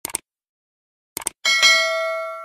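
Subscribe-button sound effect: a short mouse click at the start, another quick click cluster just past a second in, then a notification bell ding struck twice in quick succession that rings on with a clear, steady tone.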